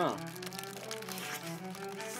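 Background music: a simple tune of held notes stepping from one pitch to the next, with faint crinkling of paper burger wrappers as the burgers are handled and bitten.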